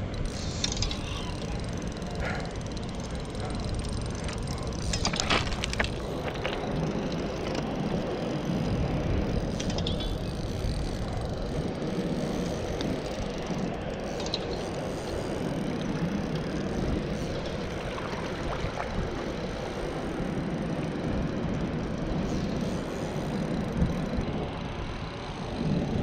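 Steady rush of wind and fast-flowing canal water, with a spinning reel being worked while a trout is played on the line, a few brief sharper clicks about five seconds in.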